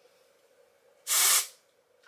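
An aerosol can of dry shampoo sprayed once at the hair roots, a hiss of about half a second starting about a second in.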